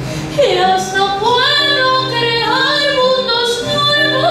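A woman singing a slow, sliding melody with vibrato, accompanied by an acoustic guitar holding chords.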